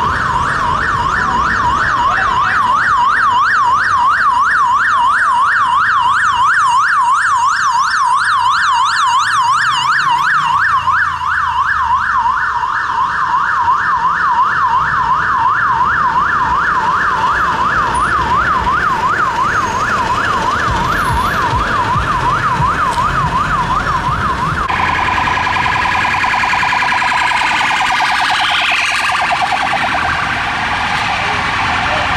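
Emergency vehicle siren on a fast yelp, its pitch sweeping up and down several times a second, with traffic rumble beneath. Near the end it switches to an even faster, wider-ranging warble.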